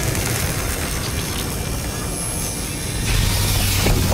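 Film sound effect of a glowing beam burning through a metal door: a steady hissing, rushing noise. A deep hum joins it and it grows louder about three seconds in.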